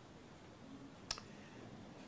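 Quiet pause in a lecture hall: faint room tone with a single short, sharp click about a second in.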